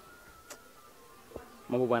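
A faint, thin, high-pitched steady buzz of the kind an insect makes, under a quiet background, with a sharp click about a quarter of the way in. A man's voice starts loudly near the end.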